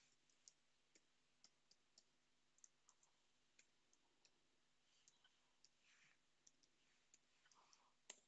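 Near silence with faint, irregular clicks of computer keyboard keys being typed, a few in quick succession near the end.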